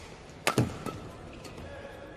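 Badminton rally: a sharp racket smack on the shuttlecock about half a second in, followed at once by the heavier thud of a player's foot landing on the court, then a fainter knock.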